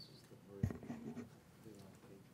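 A single sharp thump a little over half a second in, followed by light rustling and a brief faint voice.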